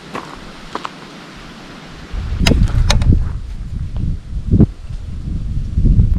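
Footsteps on a stony path, sharp clicks and scuffs of shoe on rock and gravel. From about two seconds in, wind buffets the microphone as a loud low rumble over the steps.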